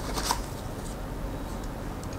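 A hand handling an open white cardboard smartphone box and its contents: light rustling with a few faint taps near the start, over steady low background noise.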